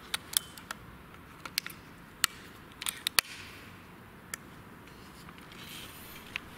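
About ten small, sharp, irregularly spaced clicks from loading pellets into an Air Arms S510 air rifle's magazine and working the rifle.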